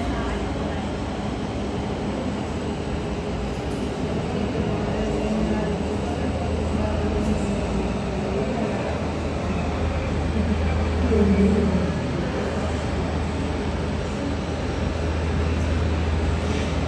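Jet airliner engines running at taxi power: a steady low rumble that swells briefly about eleven seconds in.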